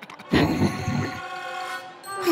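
A loud horn-like blast of several pitches at once starts about a third of a second in and fades away before the end, a cartoon sound effect.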